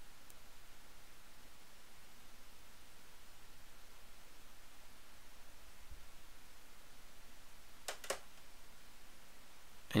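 Quiet room tone with a faint steady hiss, broken about two seconds before the end by two quick clicks.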